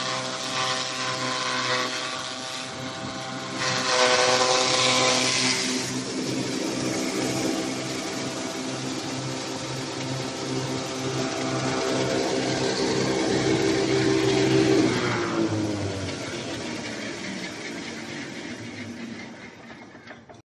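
Chaff cutter running and chopping dry stalks: a steady machine hum with a louder crunching burst about four seconds in as stalks feed through. Around fifteen seconds in its pitch sags briefly, then the sound slowly tails off.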